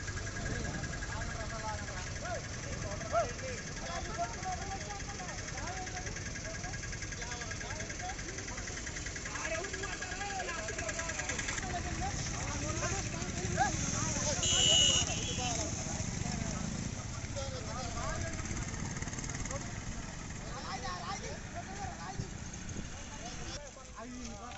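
Several men's voices talking in the background over a steady low rumble, with a brief louder sound a little past halfway.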